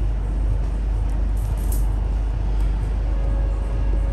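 Steady low rumble of background noise, with a few faint soft clicks about a second and a half in and a faint thin hum near the end.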